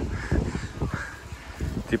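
Two short, harsh, caw-like bird calls, the first about a quarter second in and the second about a second in, over a low rumble.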